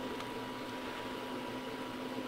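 Faint steady hiss of the recording's background noise, with a faint steady hum underneath and one soft click shortly after the start.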